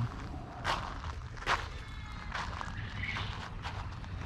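Footsteps on gravel, a step roughly every second, over a low steady rumble.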